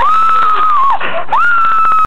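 A child's high-pitched scream, sliding up into a held note for about a second and dropping off, then a second scream starting a little over a second in, with light handling clicks underneath.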